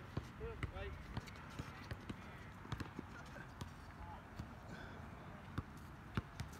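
A basketball bouncing on an outdoor hard court and players' feet moving, heard as scattered, irregular thuds. Faint shouts from the players come in now and then.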